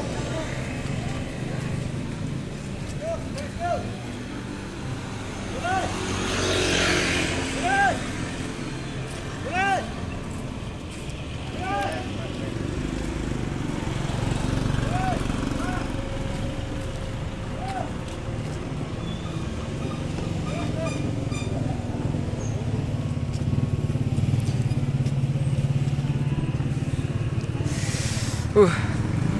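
Street traffic: cars and motorbikes running past close by, one passing about six seconds in, and an engine rumble growing louder near the end, with scattered voices of people around.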